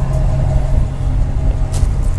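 Dodge Ram 1500 pickup's engine idling steadily, low-pitched and even.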